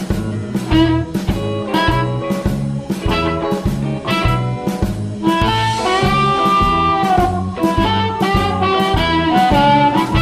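Amplified blues harmonica played through a JT30 bullet microphone and a Fuhrmann Analog Delay pedal, over a backing track with bass and a steady blues-swing beat. A long held, bending note comes in the middle.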